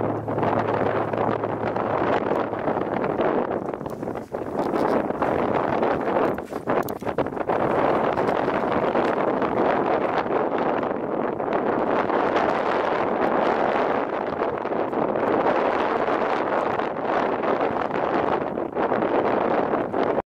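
Wind buffeting the microphone: a steady rushing noise that eases briefly about four seconds and six to seven seconds in.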